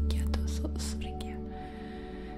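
Sound-healing music: a deep steady drone with sustained held tones, fading gradually, with soft breathy whispering over it in the first second.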